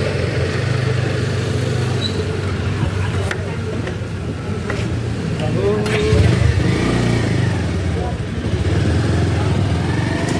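Motorcycle engine running as the bike pulls away and rides off, getting louder around six seconds in.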